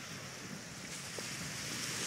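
Steady outdoor shoreline ambience: a faint, even rush of wind with distant water at a stony beach's edge, with no distinct events.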